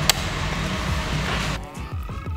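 A blown kiss, a short lip smack into the clip-on microphone, followed by steady gym background noise that cuts off abruptly about one and a half seconds in, giving way to quiet room tone.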